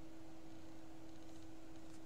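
Quiet room tone: a faint steady hum over low hiss.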